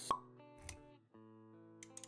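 Intro sound effects over sustained synth-like music: a sharp pop just after the start, then a short low thud. The music drops out briefly about a second in and resumes with new held notes.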